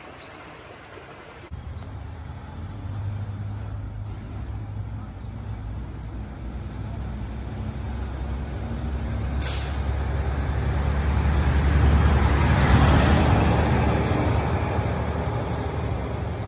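A large vehicle's engine running with a steady low hum that starts abruptly, then grows louder to a peak about three-quarters of the way through. A short, sharp hiss cuts in about nine and a half seconds in.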